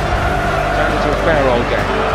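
Football match broadcast sound: steady ambience of a near-empty stadium, with a man's voice, faint, partway through.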